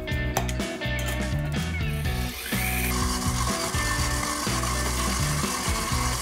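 Stand mixer's motor starting up about two seconds in with a short rising whine, then running steadily as it stirs yeast and sugar into milk, under background guitar music. Before it starts there is light metallic handling of the mixer's wire bowl guard.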